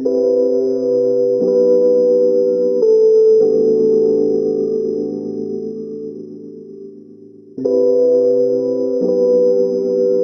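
A melodic synth chord loop in C at 125 BPM playing as a sample preview. Sustained chords change every second or so, fade away toward seven seconds in, then the loop starts over about 7.6 seconds in.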